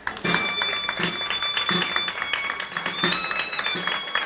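Street music: a shrill wind instrument plays a melody in long held notes that step from pitch to pitch, over a steady drum beat.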